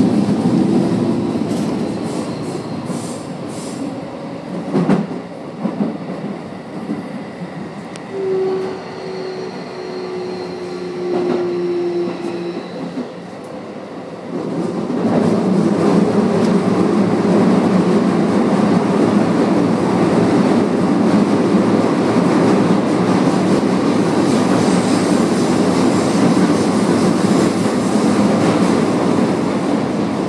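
Toei Asakusa Line subway train running through a tunnel, heard from inside the car: a steady rumble of wheels on rail with a few sharp clicks. A brief whine comes in partway through, and the rumble grows louder about halfway in and stays that way.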